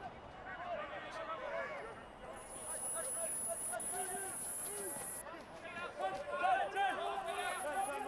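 Faint, distant voices of rugby players calling to each other on the pitch during open play. A steady high-pitched whine runs for about three seconds in the middle.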